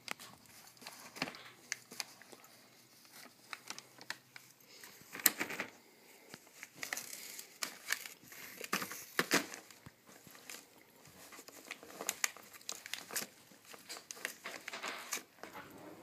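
Gift-wrapping paper crinkling and tearing in irregular bursts as a black Labrador noses, bites and pulls at a wrapped present.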